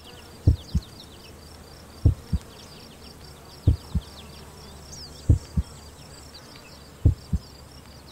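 Heartbeat sound effect: five double 'lub-dub' thumps, one pair about every 1.6 seconds, over a steady bed of high insect chirping.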